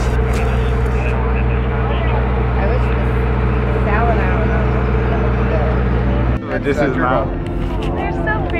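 Several people talking over a steady low mechanical hum, like an engine or generator running; the hum cuts off abruptly about six seconds in.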